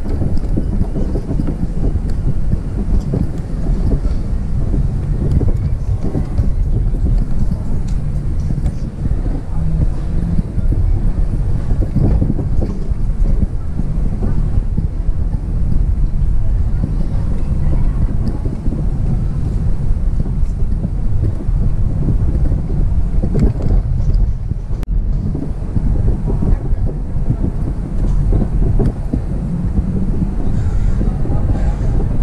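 Car cabin noise while driving slowly: a steady low rumble of tyres and engine, with wind buffeting the microphone.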